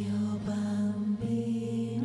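A group of women singing together in harmony, holding long notes that move to new pitches a couple of times.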